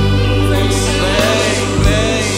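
Christian worship music: a choir singing over sustained chords, with a couple of low thumps, the loudest just before the start and one near the end.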